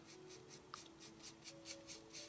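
Stiff, nearly dry paintbrush scrubbing back and forth over the edge of a gilded tray frame, laying on dark shading: faint, quick scratchy strokes, about four or five a second.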